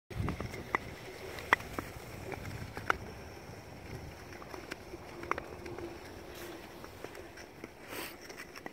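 Ice skates gliding over clear lake ice: a low scraping rush with a few sharp clicks, the loudest about a second and a half in and near three seconds.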